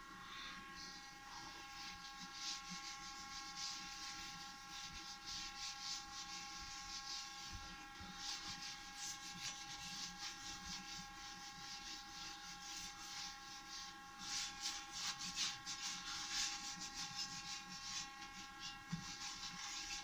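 Cloth rubbing wax polish over the metal bed and fence of a surface planer: faint, irregular swishing strokes, busier in the middle and latter part, over a steady faint hum with several pitches.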